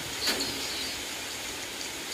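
Steady background hiss with no words, and one faint click about a quarter second in.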